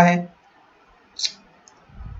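A single short, sharp click a little over a second in, typical of a computer mouse button, followed by a faint tick and a low dull knock near the end.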